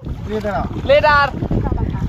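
Men's voices talking and laughing, with wind rumbling on the microphone.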